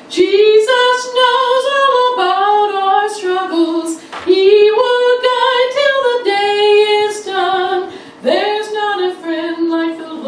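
A woman singing a hymn solo into a microphone, in long held notes with short breaks for breath about four and eight seconds in.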